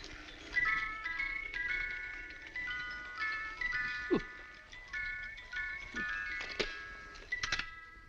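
A mechanical singing-rabbit music toy plays a tinkling, high-pitched tune of short stepping notes. It stops after about seven seconds, with a few clicks near the end.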